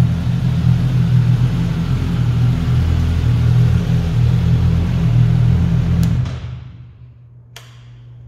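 Suzuki GSX-S1000 inline-four engine running steadily at idle with a deep rumble, which dies away about six seconds in, followed by a single click.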